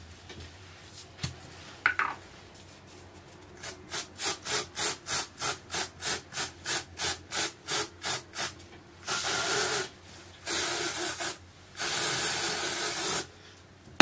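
Aerosol can of Batiste dry shampoo being shaken, rattling in a regular rhythm of about three strokes a second. Then three hissing spray bursts of about a second each as it is sprayed onto the hair.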